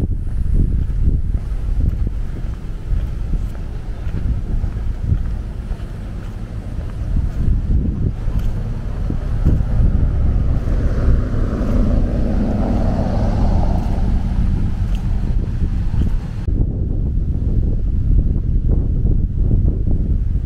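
Wind buffeting the microphone with a steady low rumble, and a car passing on the road midway, its tyre noise swelling and fading.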